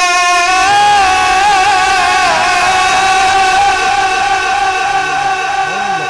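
Quran recitation (tilawat) by a male qari through a microphone: his high voice holds one long drawn-out note, with wavering melodic turns between about one and two and a half seconds in before it settles again. Near the end a lower voice line starts to rise and fall.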